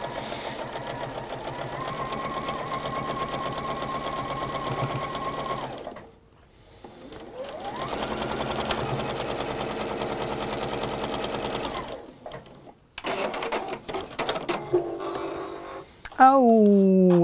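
Electric sewing machine stitching a patchwork seam in two runs with a short pause between. The second run starts slowly and speeds up, then stops about twelve seconds in.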